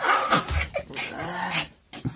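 A man gasping and moaning, worn out from hard laughter: breathy bursts, then a drawn-out moan that rises and falls in pitch in the second half.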